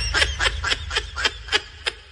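High-pitched, sped-up cartoon giggling in quick short syllables, about six a second, fading away toward the end over a low bass rumble that also dies down.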